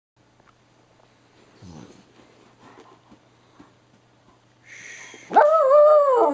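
Puggle howling: after a few faint low sounds, a loud howl starts near the end, rising sharply and then holding its pitch. It is her protest at being told to do tricks.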